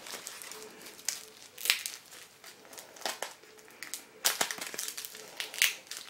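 Plastic wrapping and packing tape crinkling in irregular bursts as a tape-wrapped bundle is handled.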